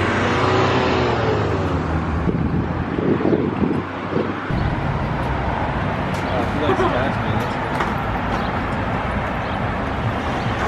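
Street traffic noise from cars going by on a busy road, a steady wash of engine and tyre sound that shifts about halfway through, with indistinct voices in the background.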